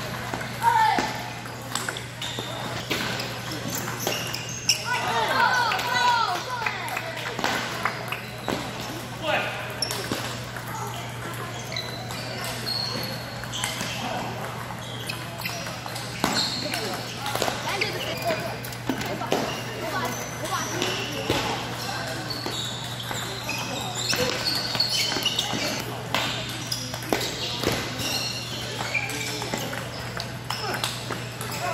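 Table tennis balls clicking off paddles and bouncing on tables in a run of rallies, over a hubbub of voices and a steady low hum.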